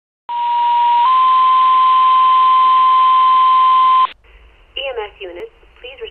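Two-tone dispatch page over a radio: a steady tone held about a second steps up slightly in pitch into a second tone held about three seconds, over radio hiss, then cuts off sharply. A dispatcher's voice over the radio follows near the end, calling out the EMS unit.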